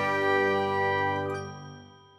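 A bright, chime-like closing jingle: a sustained ringing chord that fades away, nearly gone by the end.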